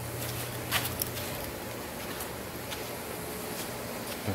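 Steady industrial-shop background noise with a low machine hum that dies away about a second and a half in, and a few light clicks and knocks from a handheld camera being carried across the shop floor.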